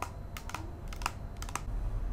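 A quick series of sharp plastic clicks, about half a dozen, from a white pump bottle of facial moisturizer being handled and its pump pressed to dispense onto a palm.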